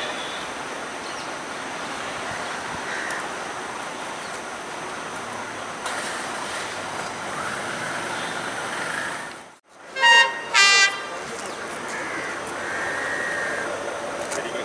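Diesel multiple unit (power set) train horn sounding two short, loud blasts about half a second apart. Before them there is steady background noise from the track.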